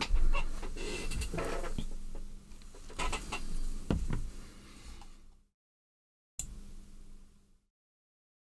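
Small clicks and taps from handling metal tweezers over a silicone work mat, with a steady low hum behind them. About five and a half seconds in the sound drops to dead silence, comes back briefly, and cuts out again.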